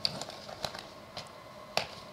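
Scattered sharp clicks and taps, about five in two seconds with the loudest near the end, from a laptop and equipment being handled close to a lectern microphone.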